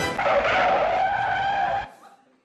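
Car tyre screech sound effect played over the PA: a loud, held squeal that starts just after the music stops and cuts off abruptly near the end.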